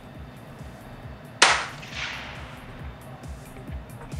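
A single shot from a 3D-printed plastic .22 rifle held in a bench rest: one sharp crack about a second and a half in, with a short echoing tail.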